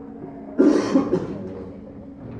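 A person coughing: a sudden loud cough a little over half a second in, followed by a second, slightly weaker burst.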